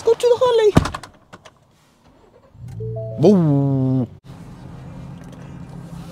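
A pickup truck door shuts with a single thud about a second in. A steady low hum follows, and near the middle a short rising tone with many overtones sounds over it.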